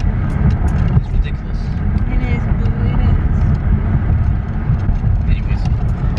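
Steady low rumble of road and engine noise heard from inside a moving car's cabin.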